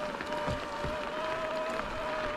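Mountain bike rolling along a gravel forest track: an even rush of tyre noise with scattered small crunches from the gravel, and a steady, slightly wavering high whine from the bike.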